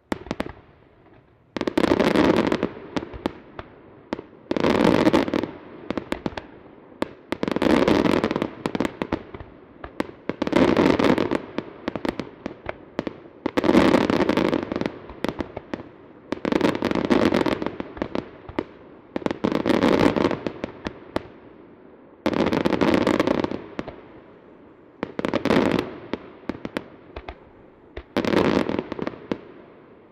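Aerial firework shells bursting in regular volleys about every three seconds, each volley a quick cluster of sharp bangs.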